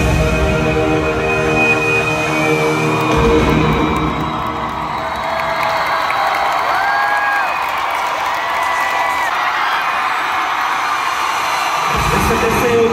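Live band music through an arena PA with a large crowd cheering. About four seconds in, the bass and drums drop out, leaving a softer, thinner sound with a few long, high held notes over the crowd.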